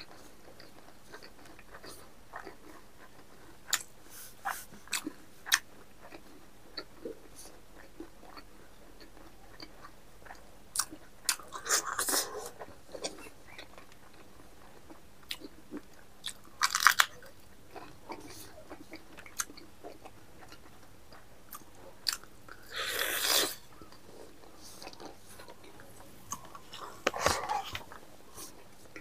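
Close-up mouth sounds of a man eating rice and meat with his hand: chewing and lip smacking, with scattered sharp clicks and a few louder short bursts.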